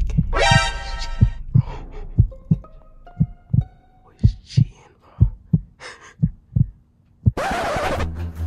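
Heartbeat sound effect: paired low thumps, about one pair a second, with faint musical tones over them. A sudden loud burst of noise cuts in near the end.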